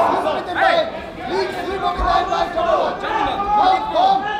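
Several voices talking and calling out over one another, with crowd chatter around them in a large hall. A low thud sounds about two seconds in.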